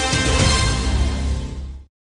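News channel intro theme music with a heavy bass, fading out near the end and cutting to silence.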